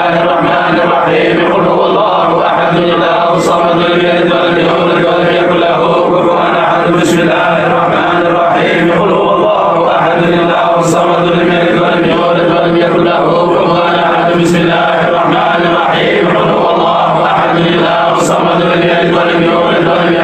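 Male voices chanting a Sufi samāʿ in Arabic, steady and unbroken, with a repeated phrase coming round about every three and a half seconds.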